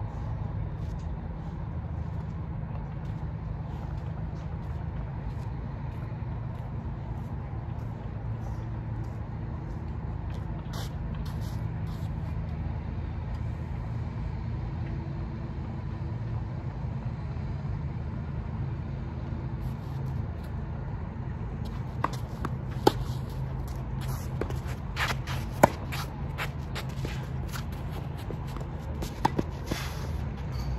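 A steady low rumble throughout, with a few sharp taps over the last eight seconds: a tennis ball being bounced on the clay court ahead of a serve.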